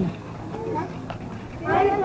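Chatter of several people talking around the microphone, with one voice speaking up clearly near the end.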